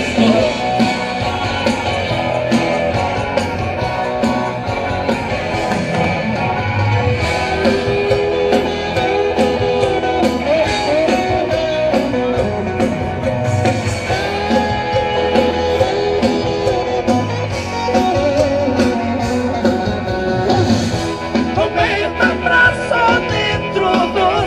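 A live band playing a sertanejo song: electric guitars and bass over a steady beat, with no words sung.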